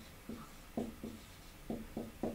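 Dry-erase marker writing numerals on a whiteboard: about five short, separate strokes.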